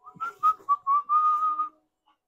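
A person whistling a short tune: four quick notes, then one longer held note that stops a little before the end, with faint rustling of cloth around it.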